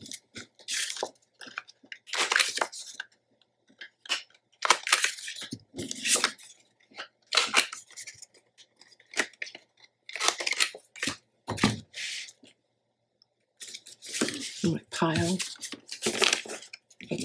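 A corner rounder punch (a corner chomper) clipping the corners of patterned cardstock pieces: a series of short, crisp cuts with paper handling between them.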